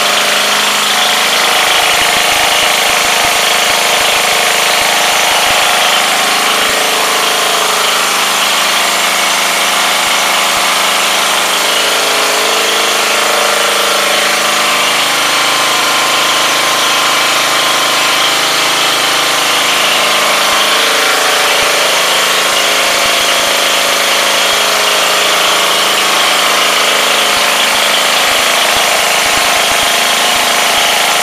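4 hp Briggs & Stratton single-cylinder engine driving a Wincharger 1,500-watt generator, running steadily at its governed speed with no change in pitch or loudness.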